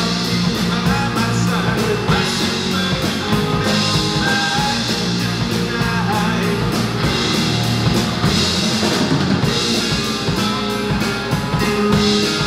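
A rock band playing live: two electric guitars, electric bass and a drum kit, with a male voice singing.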